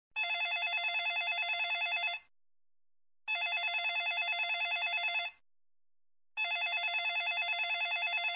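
iPhone ringing with an incoming call: three rings of about two seconds each, about a second apart, each a fast warbling electronic trill.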